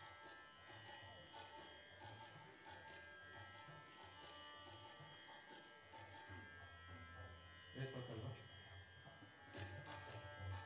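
Near silence: a faint, steady electrical hum and buzz from the stage amplification, with a brief louder sound about eight seconds in.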